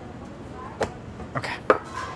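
Three short, sharp knocks and clicks on a wooden cutting board as smashed olives are pitted by hand, the loudest near the end.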